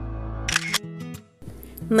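Soft background music with held tones, broken about half a second in by a few sharp clicks, then a short near-silent gap before a woman's narrating voice begins at the very end.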